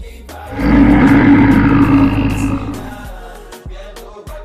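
A lion's roar, starting about half a second in, loud for about two seconds and then fading, over a music track with a steady beat.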